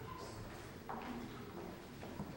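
Quiet hall ambience between songs: faint voices and stage movement, with a single sharp knock a little under a second in.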